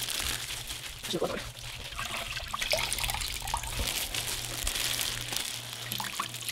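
Water trickling and splashing back into a stainless steel bowl as wet cotton sweatpants are squeezed out by gloved hands, with wet fabric and plastic crinkling throughout.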